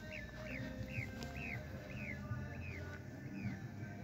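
A bird calling: a series of short, falling chirps, about two a second, spacing out and fading toward the end, over background music.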